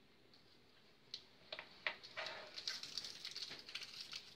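A few light clicks, then from about two seconds in a faint, rapid crinkling and crackling of a small wrapper being handled and picked at with the fingers.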